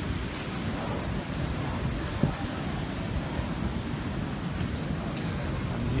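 Wind buffeting the microphone, with the steady wash of large waves breaking on the beach behind it. A single sharp knock about two seconds in.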